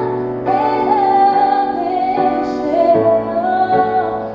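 A woman singing a slow worship song in long held notes, accompanied by her own piano chords.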